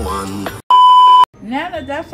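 Music fades out and is cut by a loud, steady electronic bleep lasting about half a second, a censor-style tone edited onto the track. A woman starts talking just after it.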